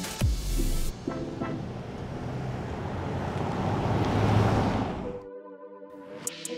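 A 2023 Jeep Grand Cherokee with a petrol V6 drives past, its tyre and engine noise swelling to a peak about four seconds in and then fading, over background music. Shortly after five seconds the car sound cuts off, leaving soft sustained music notes.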